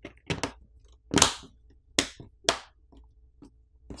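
Tecno Pova 2's plastic back housing being pressed onto the phone's frame by hand, its catches snapping into place in a series of about six sharp clicks and snaps.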